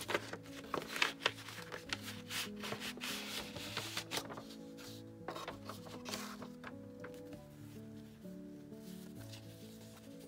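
Paper rustling and sliding as sheets of printed junk journal paper are drawn out of a kraft envelope and leafed through, busiest in the first half and then fewer. Soft background music with sustained notes plays underneath.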